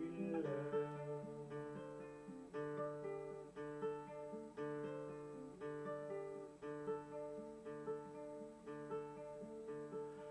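Classical guitar played solo in a song's instrumental interlude: fingerpicked chords struck about once a second in a steady, repeating pattern.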